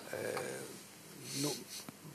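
A man's breathing and faint throat and mouth sounds, close on a lapel microphone, with a brief low murmur and a small click near the end.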